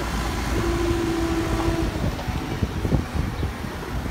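JCB 3CX backhoe loader's diesel engine running under load as it lifts and tips its front bucket of mud over a dump truck, with a steady whine for about a second near the start and a few short knocks about three seconds in.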